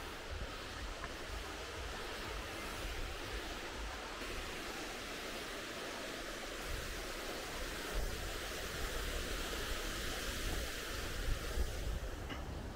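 Steady rush of water from a waterfall and the stream in the gorge below, with an uneven low wind rumble on the microphone.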